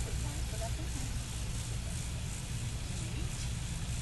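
Steady low rumble of wind buffeting a phone microphone, with faint murmured voices.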